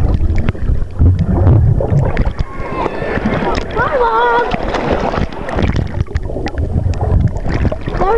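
Pool water sloshing and splashing right against the camera's microphone at the surface, with a heavy low rumble and many small splashes. A high voice calls out briefly near the middle.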